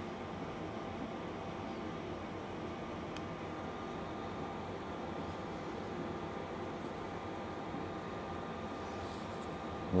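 Steady hiss and hum of a running fan, even throughout, with a faint click about three seconds in.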